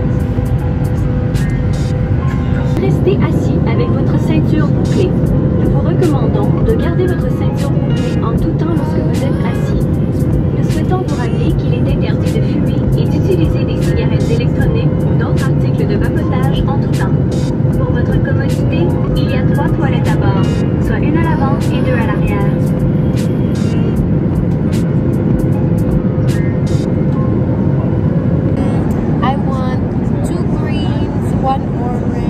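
Steady drone of a jet airliner's cabin in flight, a constant low rumble with a steady hum. Indistinct voices and small handling clicks run over it.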